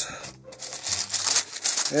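Packing paper rustling and crinkling as it is pulled back inside a cardboard box, starting about half a second in.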